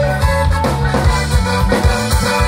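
Live rock band playing through a PA system: drum kit keeping a steady beat under bass and electric guitar, loud and full throughout.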